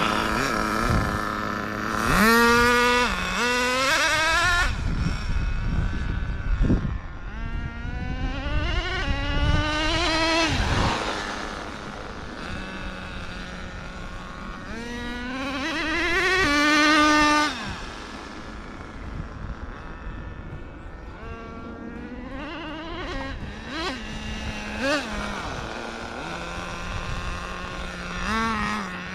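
Nitro-powered Traxxas 4-Tec RC car engine revving up three times, its high-pitched note climbing on each run, with a drop and climb again as the two-speed transmission shifts. Between runs the engine settles to a steady idle.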